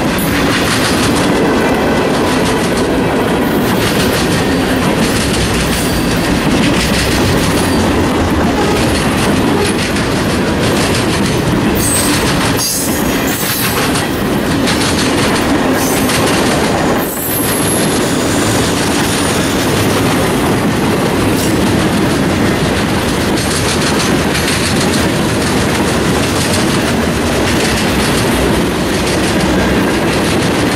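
Freight train cars rolling past close by, steel wheels clattering over the rail joints in a steady loud run, with brief high wheel squeals around twelve and seventeen seconds in.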